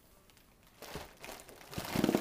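Silent for almost a second, then a foil helium balloon crinkling and rustling in irregular bursts as it is squeezed, its valve at the mouth to draw out helium.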